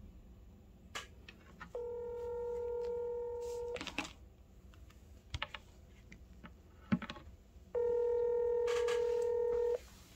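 Telephone ringback tone of an outgoing call waiting to be answered: two steady rings, each about two seconds long, four seconds apart.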